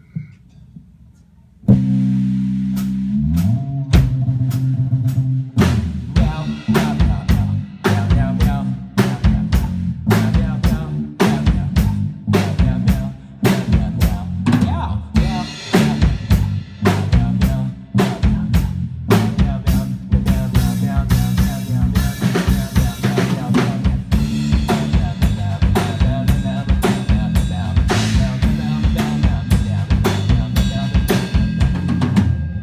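Live electric bass and drum kit starting a song, a jazz cover: after a near-silent first two seconds the bass comes in loud with a slide down, then plays a line of changing low notes while kick, snare and rimshots keep time. The cymbals get busier in the second half.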